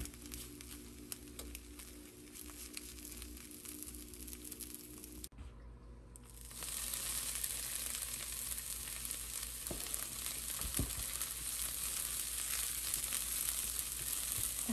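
Finely chopped broccoli sizzling in a hot nonstick frying pan, a steady hiss that starts about six or seven seconds in. Before it, the sound is quieter, with soft taps and scrapes of a silicone spatula turning an omelette in the pan.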